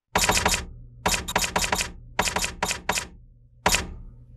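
Typewriter keys striking in quick runs of four to six strokes with short pauses between, and a single stroke near the end.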